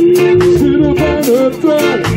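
Live jazz-reggae band playing, with drums, keyboard and guitar keeping a steady beat, and a long held melody note over it for most of the first second and a half.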